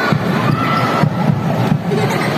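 Crowd of basketball spectators cheering and shouting, with a few short knocks among the noise.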